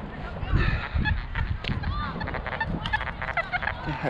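XP Deus metal detector giving a run of short, warbling, broken tones as the coil sweeps the ground: the jumbled signal of a junky-sounding target.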